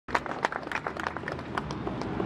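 Scattered applause from a crowd, the individual hand claps irregular and distinct.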